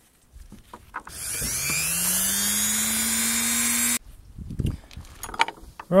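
A small handheld electric rotary tool starts about a second in, spins up with a rising whine and runs steadily for about three seconds before cutting off abruptly. Light knocks and the clink of handled metal parts come before and after it.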